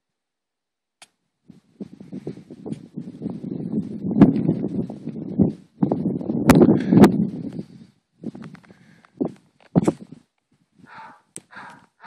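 Wind gusting over the microphone in a run of rumbling bursts for several seconds, mixed with sharp clicks and knocks from the camera being handled. Near the end it breaks into shorter separate gusts.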